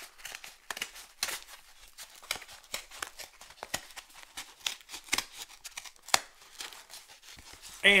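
A stiff Priority Mail paperboard envelope being handled and opened: irregular crackles, clicks and rustles of paper, with one sharper snap about six seconds in.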